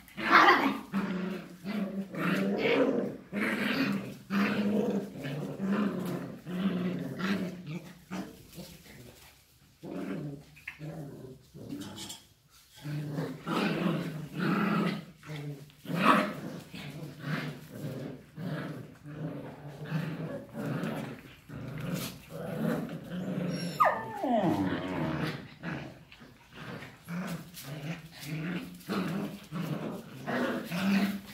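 Border collies play-growling almost continuously as they wrestle and pile onto one dog, in long low rumbles with brief pauses. About three-quarters of the way through, one dog gives a single high cry that slides down in pitch.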